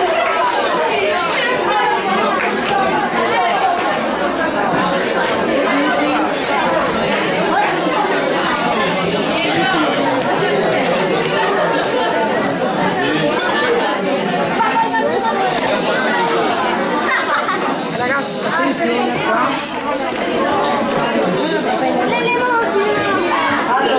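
Many children's voices chattering over one another in a large, echoing hall.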